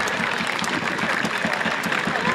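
Football crowd applauding: many scattered hand claps over a general hum of spectators' voices.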